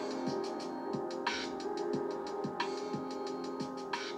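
A chill hop beat playing from an Akai MPC Live II: low drum hits, a sharper hit about every 1.3 seconds, fast ticking hi-hats, and held chords underneath.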